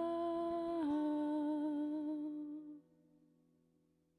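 A woman's voice holding the final note of a song with a slight vibrato. It steps down a little in pitch about a second in and fades away before three seconds.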